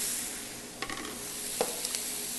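Browned ground turkey and diced vegetables sizzling in a hot skillet as they are stirred with a metal slotted spoon, with a couple of light clicks partway through.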